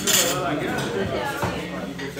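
Plates and cutlery clinking in a crowded dining room, with one sharp, loud clink right at the start, over people chatting and a short laugh.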